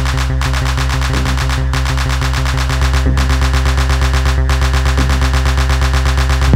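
Tech house music: a fast, even roll of short repeated hits over a steady low bass line, getting louder about halfway through.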